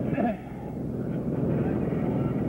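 Light aircraft's engine running steadily, a continuous drone heard from inside the cockpit, with a short laugh from the pilot near the start.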